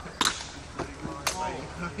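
Longsword blades clashing twice in a sparring exchange: two sharp clacks about a second apart.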